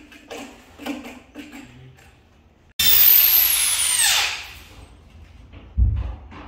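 Corded electric drill running at full speed, then released, its whine falling steadily in pitch as the motor winds down. A dull thump comes near the end.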